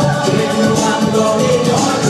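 Loud freestyle dance-pop music from a club PA, with a male singer's voice over the backing track.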